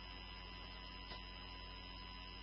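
Faint, steady electrical hum with a few thin, high steady tones: the background noise of the recording.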